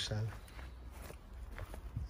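Footsteps of a person walking, a few faint scuffs and ticks, over a low steady rumble.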